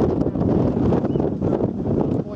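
Loud wind buffeting the microphone on the deck of a boat under way at sea, a steady, uneven rumble.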